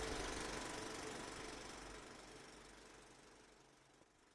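Steady machine-like noise with a low hum, fading out gradually to near silence.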